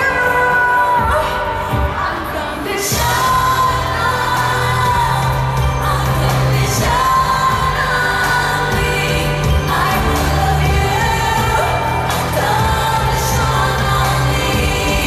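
Live pop music through an arena sound system: a female lead singer singing into a microphone over the band. A deep bass part comes in about three seconds in.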